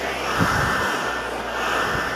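Handheld hair dryer blowing a steady rush of air onto short hair. Its sound shifts a little a fraction of a second in as the dryer is moved over the head.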